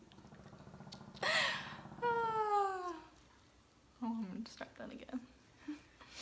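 A woman laughing after a flubbed line: a low, creaky chuckle, a louder burst of laughter about a second in, then one long vocal sound that falls in pitch, followed by quieter muttering near the end.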